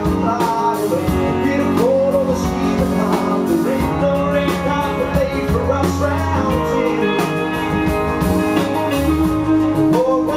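A live rock band playing a song: electric and acoustic guitars over bass and drums, with a bending lead melody line.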